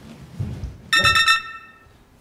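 A comic 'shock' sound effect edited in: a bright, ringing run of rapid chime-like notes about a second in, fading out within half a second.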